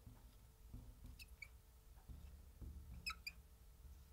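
Faint squeaks of a marker writing on a glass board: two short, high squeaks about a second in and two more just past the three-second mark, over a low room rumble.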